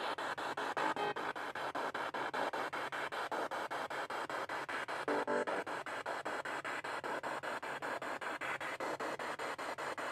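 Spirit box radio sweep: static chopped into rapid, evenly spaced cuts several times a second, with brief snatches of tone or voice about a second in and again about five seconds in.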